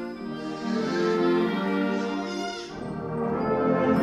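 Live concert band playing sustained chords with the brass to the fore. The sound swells about a second in, eases around the middle, and builds again toward the end.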